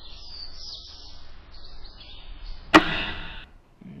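Birds chirping in quick short calls, then, a little under three seconds in, a single sharp loud knock with a short ringing tail, the loudest sound.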